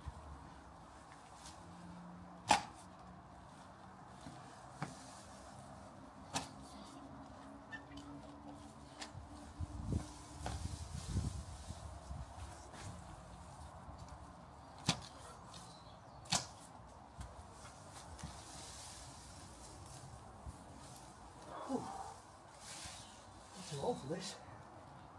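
Garden fork working into soil and roots: scattered short, faint knocks and scrapes at irregular intervals, a dozen or so spread over the stretch.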